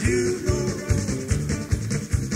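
Rock band music between sung lines: drums keeping about two beats a second under guitar and bass.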